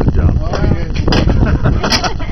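Rusty galvanised sheet-metal ductwork being struck and pried at with a hand tool: sharp metallic knocks about a second in and again near the end, over low wind rumble on the microphone and voices.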